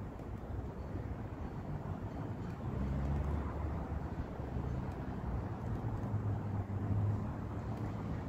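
Low engine rumble of a vehicle outdoors, growing louder about three seconds in and holding steady.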